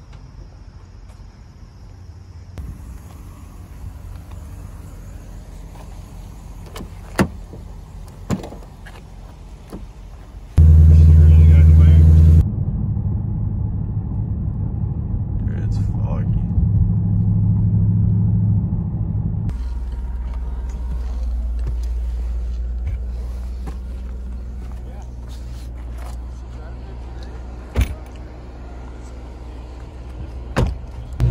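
The 2017 Ford Mustang GT's 5.0-litre V8, heard from inside the cabin. The first ten seconds are quieter, with two knocks. Then, about ten seconds in, there is a very loud two-second spell of engine sound, followed by the engine running with rising and falling pitch, and a steady low rumble as the car drives.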